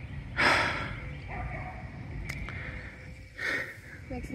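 A person breathing out hard, a loud rush of breath about half a second in and a shorter one near the end, over a low rumble on the microphone.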